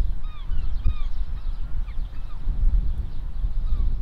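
Outdoor ambience: a rumbling low wind noise throughout, with a few short honking bird calls in the first second and fainter calls later on.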